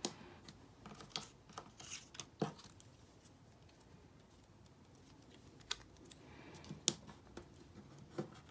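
Paper cut-outs being glued onto a sheet with a glue stick and pressed down by hand on a tabletop: faint paper rustling with a scattering of light taps and clicks, a few sharper ones between them.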